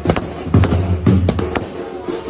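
A run of sharp bangs at irregular intervals, several a second, over music with a low, booming beat.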